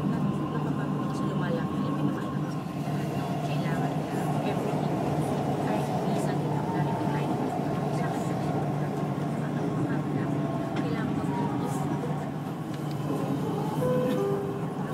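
Dubai Metro train running between stations, heard inside the car: a steady rumble and hum with a faint held tone, under murmured passenger voices.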